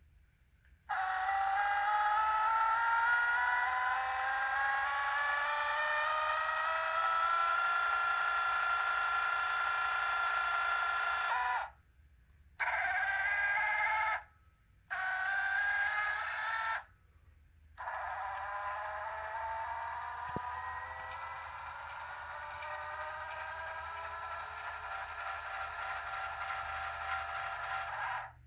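Explore Scientific EXOS-2GT GoTo mount's declination motor whining as it slews at maximum speed, its pitch climbing as it speeds up. It runs for about ten seconds, stops, gives two short bursts, then runs again with a rising whine until near the end.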